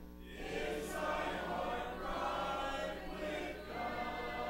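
Church congregation of men and women singing a hymn together, phrase by phrase, with a brief breath between phrases near the end.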